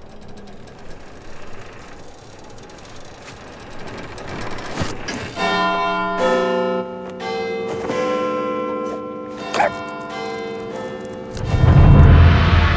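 Big Ben's clock bells chiming, a slow sequence of long ringing notes that starts about five seconds in, after a quiet stretch. A loud low boom comes in near the end.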